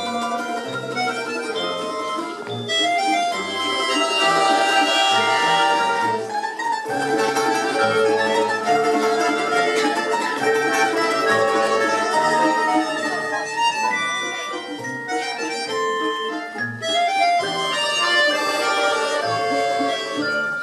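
Russian folk-instrument orchestra playing: domras and balalaikas plucked and strummed together with sustained bayan chords, the whole ensemble full and steady, easing back a little a couple of seconds past the middle before building again.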